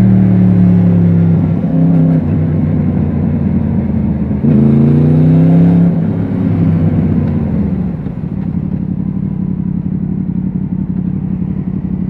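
Yamaha MT-10's crossplane inline-four engine heard from the rider's seat while riding: steady running, then the revs rise briefly about four and a half seconds in. From about eight seconds the revs drop and it settles to a lower, quieter idle as the bike comes to a stop.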